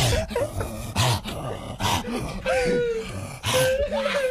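A man imitating a vicious dog straining on a choke chain: rasping, gagging barks and snarls, with a long held whining cry about two and a half seconds in and another near the end.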